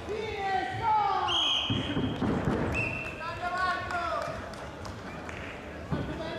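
Several men shouting loudly in a large hall, with voices overlapping and rising and falling in pitch, and a dull thump about two seconds in.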